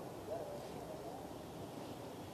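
Faint background noise with a soft, low call about a third of a second in.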